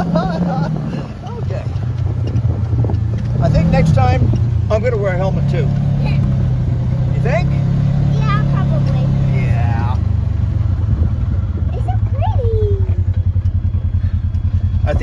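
Side-by-side UTV engine running under throttle as it drives over rough field ground; the engine note rises about four seconds in and drops back near ten seconds, with a quick regular pulsing toward the end. Voices over it.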